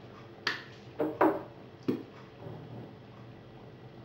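Four sharp clicks and taps of kitchen utensils on cookware, each with a brief ring, all within the first two seconds.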